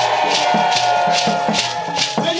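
Traditional Mankon music: shaken rattles strike a steady beat about three times a second over a held melodic line.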